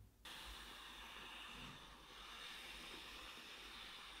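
Aerosol whipped-cream can hissing steadily as cream is sprayed from its nozzle, starting a moment in; faint.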